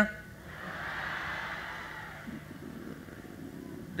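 Crowd noise from the audience: a brief swell that peaks about a second in and fades away, leaving a faint murmur.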